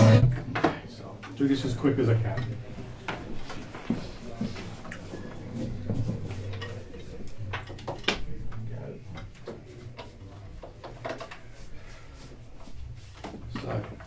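Scattered clicks, knocks and light rattles of cables and connectors being handled at a hi-fi equipment rack, as an Ethernet streaming cable is unplugged to be swapped for another.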